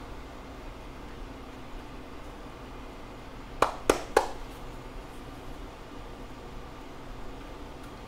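Three sharp plastic clicks in quick succession, about a third of a second apart, near the middle, from the plastic housing of a ParaZero SafeAir parachute unit being handled during repacking. Low room hum underneath.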